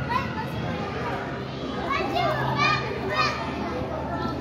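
Children's voices and shouts of play over a steady background din, with a few high-pitched calls from about halfway through.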